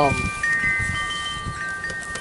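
Chimes ringing: several long, steady tones at different pitches, overlapping and sustained.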